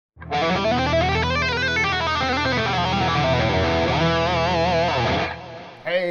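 Distorted electric guitar playing a fast legato run in E Aeolian (E natural minor), hammer-ons and pull-offs running up and down the scale. It ends on notes with vibrato, then dies away just before the end.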